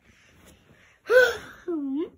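A young child's gasping vocal exclamation about a second in, high-pitched and rising then falling, followed near the end by a shorter, lower voiced sound that dips and rises in pitch.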